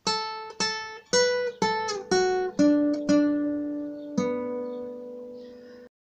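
Nylon-string classical guitar playing a single-note melody line in D major, a phrase of a hymn tune: eight plucked notes about half a second apart. The last note is held and rings for nearly two seconds before the sound cuts off abruptly near the end.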